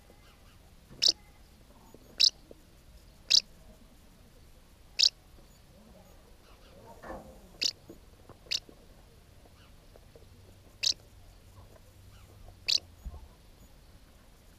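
House martins at a mud nest: eight short, sharp, dry high sounds at irregular intervals, with a soft rustle about seven seconds in.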